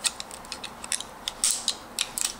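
Utility knife blade cutting through plastic shrink wrap on a small plastic box, a run of short, irregular clicks and crackles, the loudest about one and a half seconds in.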